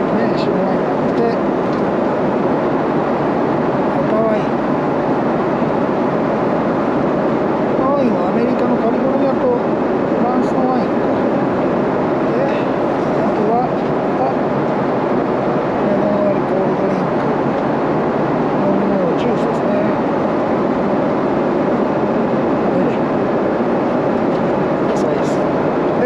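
Steady cabin noise of a Boeing 777-300ER airliner in flight, an even rush that never lets up, with faint voices underneath. A few light rustles of menu pages being turned can be heard.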